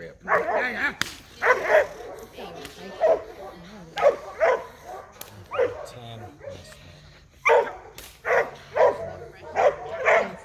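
Seven-month-old Airedale terrier barking repeatedly at the decoy during bite-work agitation, about a dozen short barks, many in quick pairs. A few sharp cracks sound among them.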